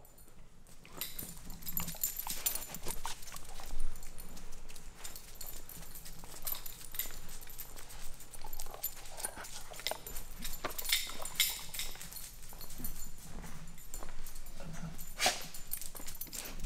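A dog chewing a rubber toy and then walking about, its claws clicking irregularly on a concrete floor.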